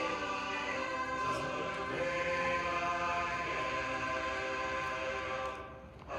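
A choir singing a hymn a cappella, voices holding chords, with a short break between phrases near the end.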